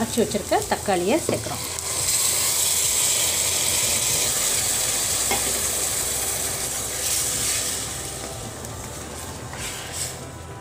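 Blended tomato mixture poured into a hot pressure cooker of fried onions and spices, sizzling loudly from about two seconds in as it hits the hot masala, then dying down to a softer sizzle near the end as it is stirred with a wooden spoon.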